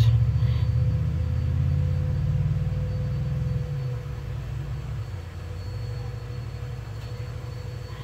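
A low rumble, loudest at first and dying down after about four seconds, over a faint steady hum.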